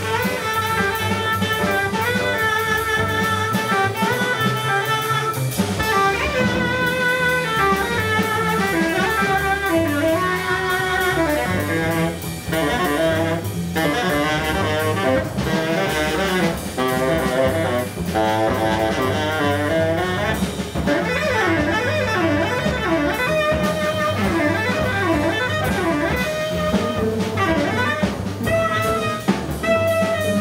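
Live free-jazz quartet: a tenor saxophone plays a wandering lead line over drum kit, upright bass and cello. In the second half the saxophone's pitch slides up and down again and again in a wavering line.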